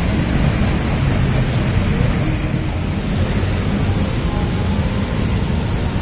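Steady low rumble of a departing intercity coach's diesel engine mixed with terminal traffic noise.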